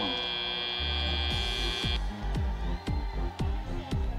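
Arena buzzer sounding one long steady tone to signal the end of the match, cutting off about two seconds in; over and after it, music with a steady bass beat.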